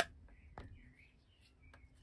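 Handling noise from a resin model car body held in the hands: one sharp click at the start, then a few faint light taps.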